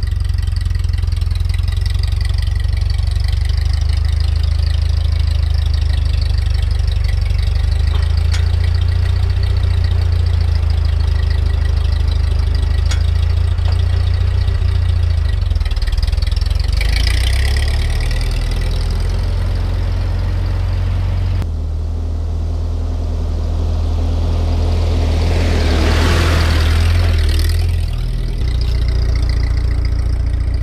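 Ford 8N tractor's four-cylinder flathead engine running steadily with a deep drone, moving a pallet load on rear three-point forks. About two-thirds through the sound changes abruptly. It then swells to its loudest near the end as the tractor comes close, and drops away as it drives off.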